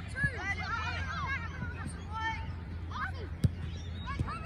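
Scattered shouts and calls from young players and sideline spectators at a junior football match, with sharp thuds of the football being kicked, the loudest about three and a half seconds in.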